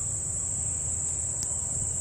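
Steady high-pitched insect chorus from the wetland vegetation, a constant shrill drone, over a low rumble, with one brief click about one and a half seconds in.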